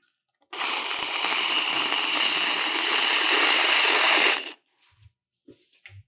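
Whipped cream dispenser spraying cream in a steady hiss for about four seconds, then cutting off, followed by a few faint taps.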